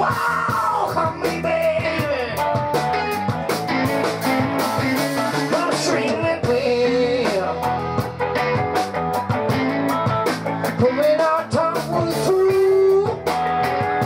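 A live band playing amplified electric guitars in a rock and blues style, continuous and loud.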